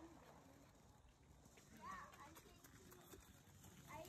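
Near silence, with faint distant voices briefly about halfway through.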